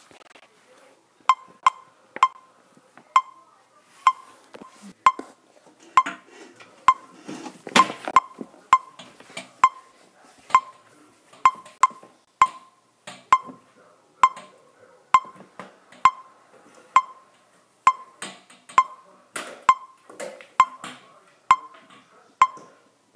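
Electronic metronome clicking steadily, a short sharp beep on each beat, counting time before a euphonium exercise; soft rustling and shuffling of movement sounds between the beats.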